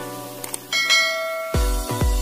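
Outro music, then two quick clicks and a bright bell-like notification chime that rings and fades, from a subscribe-button animation. Past the halfway point, electronic music with a heavy bass beat starts.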